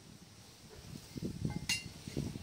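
Metal boat propellers being handled and set down on a table: soft knocks, then a single ringing metallic clink near the end as one propeller touches another.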